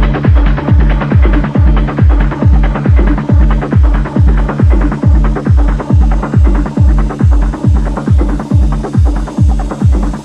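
Trance music: a four-on-the-floor kick drum hitting a little over twice a second over a sustained synth bass line, with the treble slowly thinning out.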